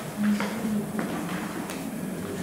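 A quiet pause in a hall, with a short faint hum near the start and a few light taps.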